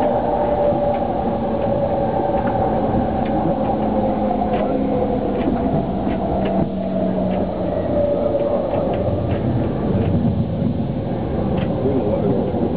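Inside a JR E231 series electric commuter train running: a steady rumble of wheels on rail with the hum of the electric drive, its tones sinking slightly in pitch as the train slows toward a station.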